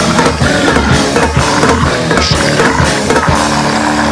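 Grindcore band playing at full tilt: rapid drum hits under noisy, distorted guitar. A little over three seconds in, the fast drumming drops away and a sustained distorted guitar chord rings on.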